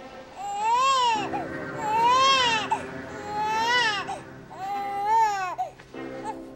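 An infant crying in four long wails, each rising and then falling in pitch, over soft sustained music that comes in about a second in.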